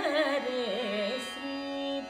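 A woman's voice singing a Carnatic melody in raga Mukhari, the pitch wavering and sliding in ornamented turns as the phrase falls and settles on a held low note near the end.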